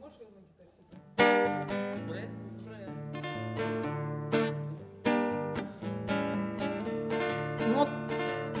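Acoustic guitar strumming chords. It starts with a loud chord about a second in and carries on with further strums and chord changes, the opening of a song accompaniment.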